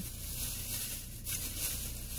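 Plastic shopping bag rustling faintly as a hand digs through it, over a low steady hum.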